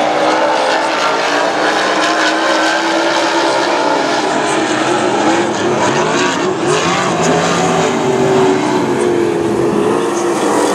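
Several dirt-track modified race cars' engines running together on the track, a loud, steady sound whose pitch rises and falls as the cars accelerate, lift and pass.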